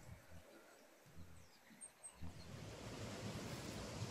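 Near silence for about two seconds, then faint steady outdoor background noise, a soft even hiss like light wind.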